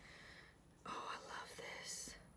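Faint whispering under the breath, starting about a second in.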